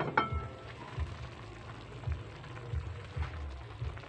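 Aluminium wok lid lifted off the pan, with a short metallic clink that rings briefly just after the start. Under it runs a steady soft hiss and low rumble from the covered pan steaming on the stove.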